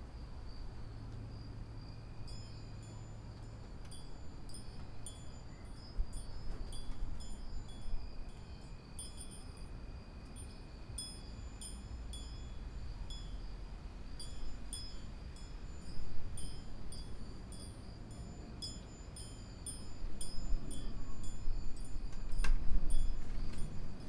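Small wind chimes tinkling in irregular clusters of high, bright notes over a steady low rumble. The rumble swells louder now and then, most strongly near the end, where there is also a single sharp knock.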